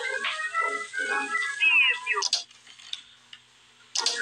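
Horror film soundtrack: a voice over music for about two seconds, then the sound drops to near silence, broken by a sharp sound right at the end.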